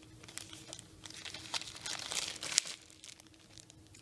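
Clear plastic bag holding a folded piece of linen crinkling as it is handled, in irregular crackles that die down after about two and a half seconds.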